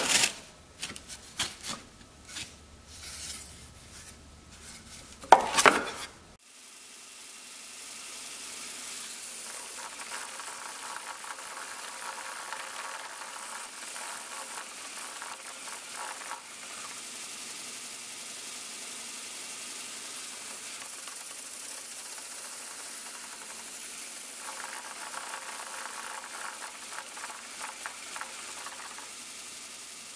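Several sharp wooden knocks over the first six seconds as a wooden jig block is set on a belt sander. Then the belt sander runs steadily while a rough wooden ball is sanded round inside the jig's sandpaper-lined cup, the sanding noise swelling in two stretches.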